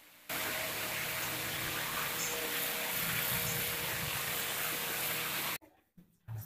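A steady hiss with a faint hum under it, switching on suddenly just after the start and cutting off abruptly near the end.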